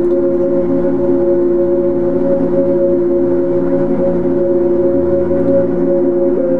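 Ambient electronic music: a sustained drone of several steady held tones with no beat. A short low bass note sounds about five seconds in.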